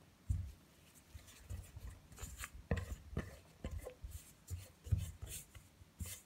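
A spatula scraping and pressing stiff biscuit dough against the side of a bowl, in short, irregular strokes with a few dull knocks, as added flour and sugar are worked in to firm up the dough.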